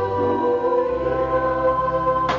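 Nuns' voices singing together in choir, held notes over a sustained accompaniment whose bass note changes twice.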